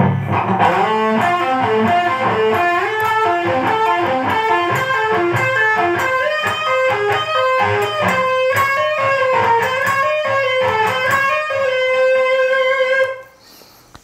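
Ibanez electric guitar playing a slow single-note lead line high on the second and third strings, a run of legato notes, ending on a held note that stops about a second before the end.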